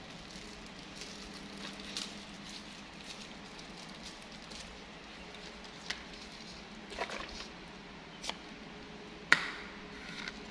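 Light crinkling and clicking of a plastic drinking straw and its wrapper being handled, with a sharper click near the end as the straw is pushed through the foil hole of a small milk carton, over a faint steady room hum.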